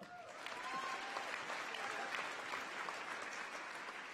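Audience applauding, a steady clapping of many hands in a large hall.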